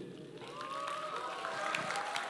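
Scattered hand clapping with faint cheering voices from an audience in a large hall, growing a little louder.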